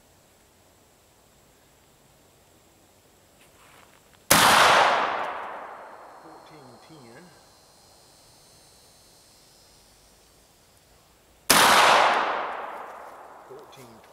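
Two shots from a 20-gauge shotgun firing handloaded Lyman sabot slugs, about seven seconds apart. Each is a sharp report followed by a long echo that fades over two to three seconds.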